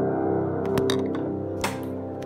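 Otto Bach Studio upright piano's last chord ringing out and slowly fading after the keys are released. A few light clicks and a knock about one and a half seconds in sound over the decay.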